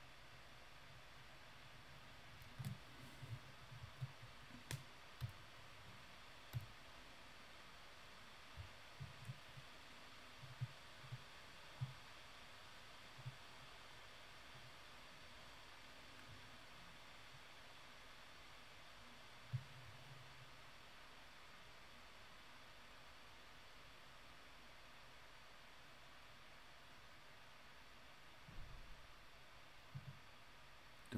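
Near silence with a steady faint hiss, broken by about a dozen soft clicks and taps of computer input in the first thirteen seconds and one more about twenty seconds in.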